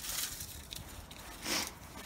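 Folded paper slips rustling as a hand stirs through them in a chrome engine valve cover, with a slightly louder rustle about one and a half seconds in. Wind rumbles on the microphone underneath.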